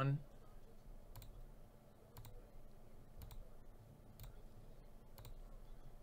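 Faint computer mouse clicks, five of them about a second apart, as a list randomizer's button is pressed over and over, over a low room hum.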